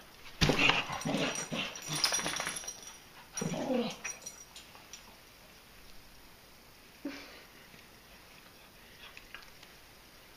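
Dogs playing: a thump and scuffling in the first few seconds, then a whimpering dog call that bends in pitch near four seconds in and a brief yip about seven seconds in.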